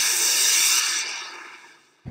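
Rocket sound effect on an animated title card: a loud rushing hiss that holds for about a second, then fades away.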